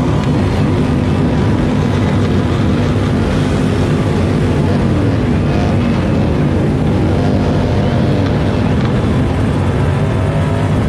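Loud amplified sound from a concert stage PA: a steady low, droning rumble with held low tones and no clear beat, heavily saturated on the microphone.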